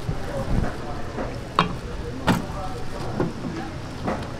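Wooden spoon stirring raw chicken pieces through flour and wet batter in a stainless steel bowl: steady scraping and mixing, with sharp knocks of the spoon against the bowl, the loudest about a second and a half and just over two seconds in.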